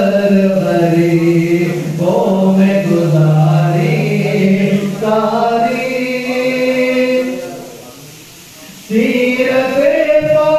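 Unaccompanied male singing of a naat, an Urdu devotional poem, in long held notes. The singing drops away briefly near the end, then comes back in strongly about a second before the end.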